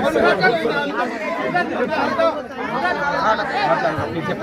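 A crowd of people talking at once: loud, overlapping chatter of many voices with no single voice standing out.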